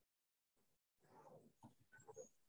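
Near silence on a video call, with a few faint, brief sounds in the second half.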